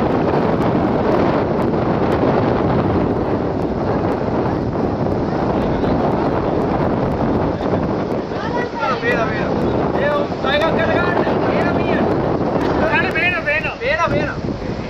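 Wind buffeting the microphone: a loud, steady rushing noise. From about eight seconds in, a few voices call out over it.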